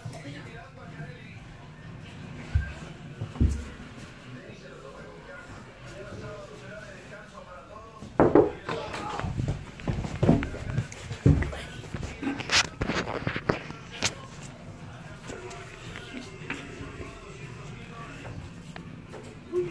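Faint, muffled voices with two soft low thumps in the first few seconds, then from about eight seconds a run of loud knocks and rustling of a handheld phone being jostled, mixed with voices and laughter.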